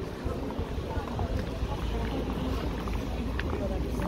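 Street ambience while walking: wind noise on the microphone, with voices of passers-by chattering faintly.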